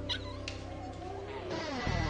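A dog hidden in a school backpack whining, a few short whines and then a longer one that rises and falls, over soft background music.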